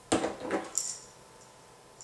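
A plastic pill bottle is picked up off the counter: a sharp knock at the start, then a couple of short clatters within the first second as it brushes the other bottles.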